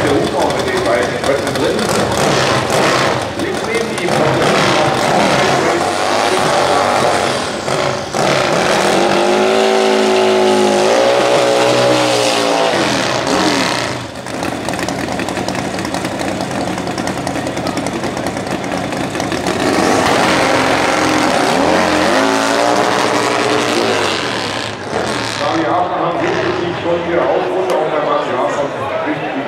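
Turbocharged twin-cylinder drag-racing motorcycle engines running loud, revved up and down several times, with a long rising and falling rev about a third of the way in and another near two-thirds, as the bikes do their burnouts and stage at the start line.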